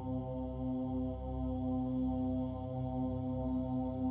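Background music: a low drone held on one steady pitch with overtones, with no beat or melody.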